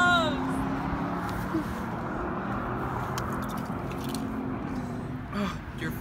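A car passing on the road, a steady running noise that swells and fades away near the end, after a brief voice at the start.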